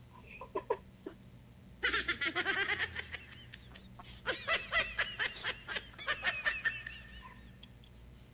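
People laughing: a few short chuckles in the first second, then two long bouts of rapid, high-pitched laughter, the first about two seconds in and the second from about four seconds in.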